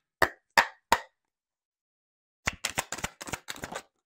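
Tarot cards being handled and shuffled by hand: four sharp card taps in the first second, then after a pause a quick run of about a dozen slaps and clicks.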